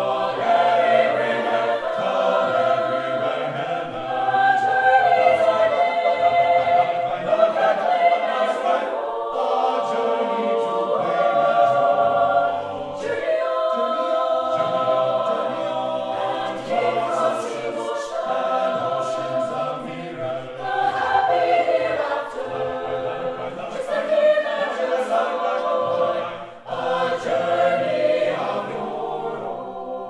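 Mixed chamber choir singing in several-part harmony, its phrases held and briefly breaking twice.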